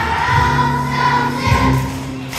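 A choir of second-grade children singing a song together in unison, with musical accompaniment.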